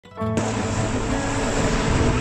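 Background music with held notes over the steady running noise of a bus travelling on a road, heard from inside the bus. Both start abruptly just after the beginning.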